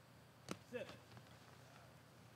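Near silence: quiet outdoor background, with one faint sharp click about half a second in and a brief wavering sound just after.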